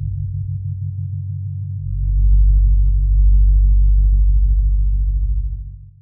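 Electronic music: low, pulsing synthesizer tones, joined about two seconds in by a deep bass tone that swells up, then the whole sound fades out at the end.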